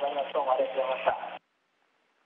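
A voice coming over a narrow-band space-to-ground radio link. A click comes about a second in, and the link cuts off sharply at about a second and a half.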